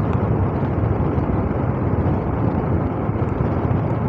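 Steady running noise of a vehicle travelling along a concrete road: engine, tyre rumble and wind on the microphone blended into a continuous low-heavy roar with no breaks.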